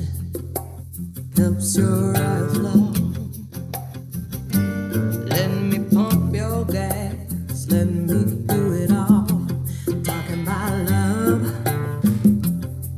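A song with a sung vocal over steady bass notes, played back through Amazon Basics powered bookshelf speakers and picked up by budget condenser microphones (NW800 and Mivsn H2) through an M9 sound card, as a test of how the cheap setup records.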